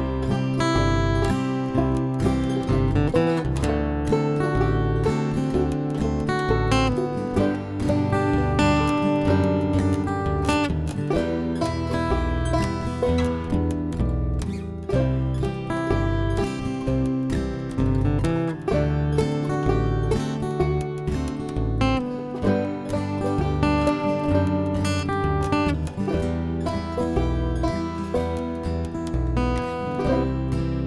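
Instrumental intro of an original country-folk tune: acoustic guitar, acoustic bass and banjo playing together at a steady level, with no vocals yet.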